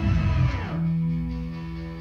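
Electronic track dropping into its breakdown: the drums cut out, a sound sweeps down in pitch over less than a second, and a sustained ambient synth pad chord then holds and slowly fades. The pad comes from an FXpansion Strobe 2 synthesizer played on a ROLI Seaboard RISE in MPE mode.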